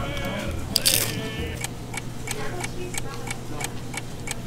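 A bite into a taco, with a short loud crunch about a second in, then chewing. Light, evenly spaced ticking runs under it at about four ticks a second, with faint voices.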